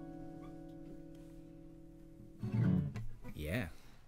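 Final chord of an acoustic guitar and a ukulele ringing out and slowly fading. About two and a half seconds in, voices begin.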